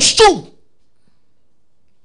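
A voice finishes a spoken word in the first half second, then quiet with no audible sound.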